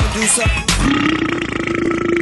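Cartoon character's long, drawn-out burp held on one buzzy pitch, starting about a second in, over upbeat music.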